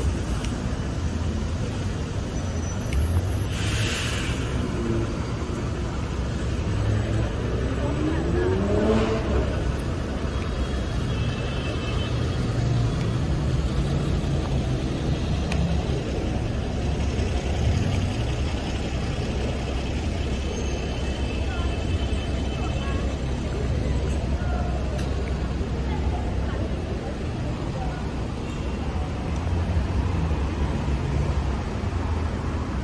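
Busy city street ambience: a steady low rumble of road traffic with cars passing and indistinct voices of passers-by, and a brief rising whine about nine seconds in.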